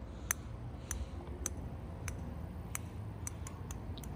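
Small orange plastic ball bouncing down concrete stairs, heard as about seven light, sharp clicks at irregular intervals over a low steady rumble.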